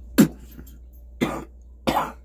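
A man coughing: three short coughs, the first and loudest just after the start, then two more about a second in and near the end.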